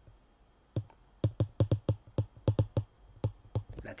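Stylus tip clicking against a tablet's glass screen while a word is handwritten: a quick, irregular run of small clicks, about five a second, starting about a second in.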